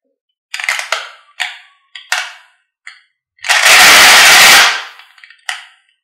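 Glass marbles clinking against each other in a plastic cup: a few short clinks, then a loud rattle of the whole cupful lasting about a second, and one more clink near the end.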